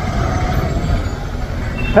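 Steady low rumble of slow-moving city traffic and the scooter's own engine, heard from the saddle while crawling in a queue of vehicles.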